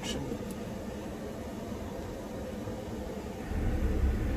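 Steady hiss of a pickup truck's climate-control fan blowing inside the cab, with the engine idling underneath. A low rumble swells near the end.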